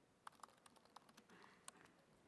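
Faint typing on a laptop keyboard: a run of light, irregular keystrokes as a command is typed.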